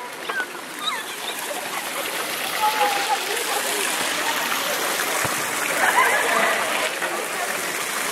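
Public fountain splashing steadily into its stone basin, a constant rush of falling water, with faint scattered voices of people on the square.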